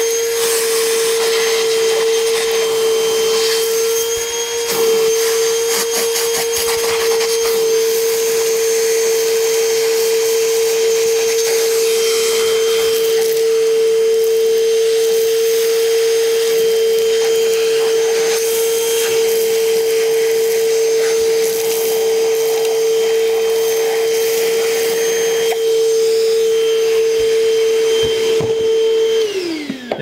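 Milwaukee M18 cordless wet/dry vacuum running with a steady whine while its hose nozzle sucks sawdust and small debris out of drilled holes, with a spell of rapid clicks of debris going up the hose about six to eight seconds in. Near the end it is switched off and the whine falls away as the motor winds down.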